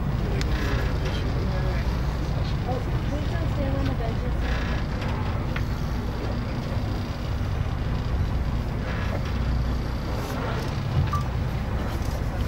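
Steady low rumble of a whale-watching boat's engine, with faint background voices of people aboard.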